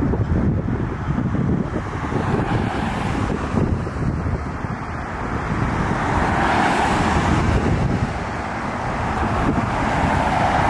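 Road traffic noise with a steady low rumble and wind on the microphone. A car passes close by from about six to eight seconds in, and another comes up near the end.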